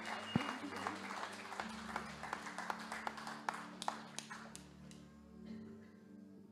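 Congregation applauding, the clapping thinning and dying away after about four and a half seconds, over a soft held keyboard chord.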